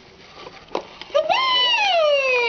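Fimbles Baby Pom plush toy's built-in sound unit, set off by a press. A couple of faint clicks come first, and about a second in a high, voice-like recorded call starts and glides slowly downward.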